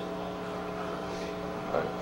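Steady hum made of several constant tones over a faint hiss: room tone.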